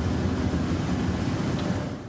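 Steady noise of an airport apron beside a parked airliner: a deep rumble with hiss above it, as from aircraft or ground equipment running.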